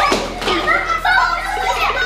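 Several young girls' voices crying out 'aiya' over one another in high-pitched exclamations.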